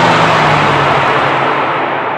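Audi A1 Sportback driving away, its engine and tyre noise slowly fading, with a low engine note falling slightly in pitch.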